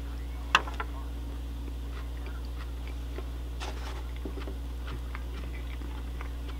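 A bite into a hot dog in a bun with a sharp click about half a second in, followed by faint chewing clicks. A steady low hum runs underneath.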